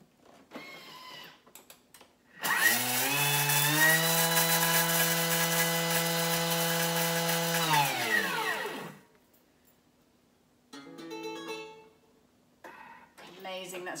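Thermomix running at speed 10, grinding demerara sugar into powder: the motor note climbs in steps as the blade spins up about two and a half seconds in, with a gritty hiss of sugar crystals over it. It holds steady for about five seconds, then falls in pitch and dies away as the blade stops.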